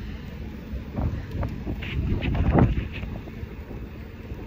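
Wind buffeting a phone's microphone during a bike ride, a low rumble that swells in gusts, strongest about two and a half seconds in.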